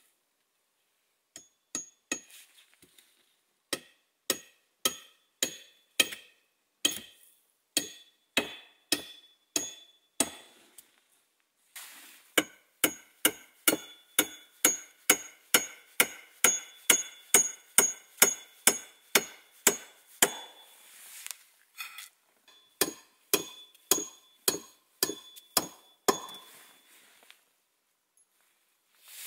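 Poll of a hatchet driving a nail into a peeled log, each blow a sharp metal-on-metal strike with a brief ringing tone. The blows come slowly and unevenly at first, settle into a steady run of about two a second, then pause briefly before a last run of blows near the end.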